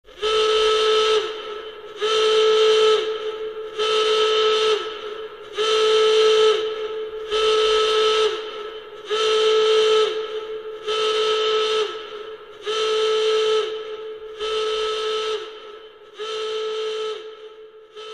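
A whistle blown in ten similar blasts, each about a second long and coming roughly every two seconds, each holding one steady pitch that sags slightly as it ends; the last few blasts are quieter.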